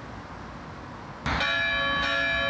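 A church bell struck once, just over a second in, ringing on with several steady tones at once. Before the strike there is only faint outdoor background noise.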